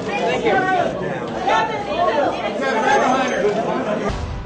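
Overlapping voices of press photographers calling out to a celebrity for poses, a busy chatter of several people at once.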